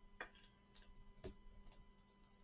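Near silence with two faint clicks, about a fifth of a second in and again just after a second, from trading cards and plastic sleeves being handled on a table, over a faint steady hum.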